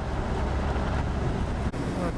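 Steady low rumble of a vehicle driving on a dirt road, heard from inside the cabin. Near the end a sharp click cuts it, and the rumble continues more weakly.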